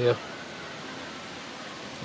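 A spoken word ends right at the start, then a steady, even background hiss of outdoor ambience with no distinct events.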